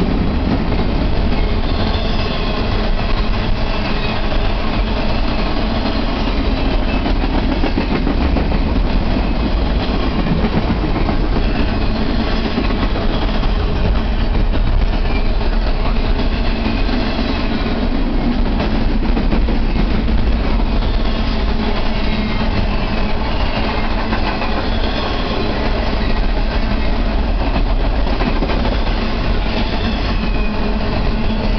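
Double-stack intermodal freight train's loaded container well cars rolling past close by: a steady, loud rumble and rattle of steel wheels on rail that does not let up.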